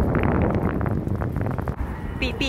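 Wind buffeting a handheld camera's microphone while riding a scooter, a heavy steady rumble broken by a few brief knocks.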